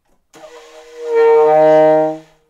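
Solo alto saxophone playing one low held note: it enters soft and breathy, then swells to full loudness about a second in.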